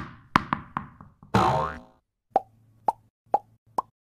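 Cartoon logo-animation sound effects. A quick run of sharp pops is followed about a second and a half in by a whoosh, then four evenly spaced plops, each with a short tone.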